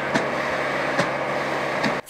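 Fire truck engine running steadily at a burning building, a low even hum under a noisy rush, with a few sharp cracks.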